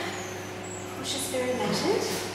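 Soft, indistinct talking starts about a second in, over a steady low hum.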